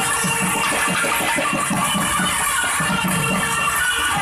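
Thavil barrel drums played in a fast solo: dense, rapid stick and finger strokes with deep bass hits, over a steady held tone.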